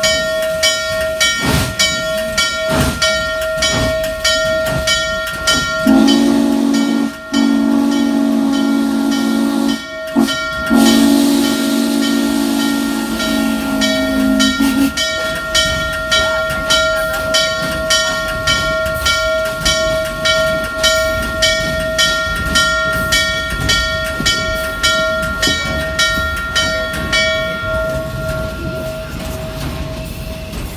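Steam locomotive No. 611 on the move, a steady rhythmic beat that quickens over the half minute. The deep steam whistle sounds in long blasts from about six to fifteen seconds in, with a brief break twice, and steam hisses alongside.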